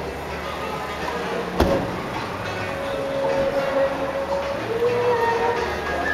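Busy exhibition-hall ambience: background music and indistinct voices, with a single sharp knock about a second and a half in.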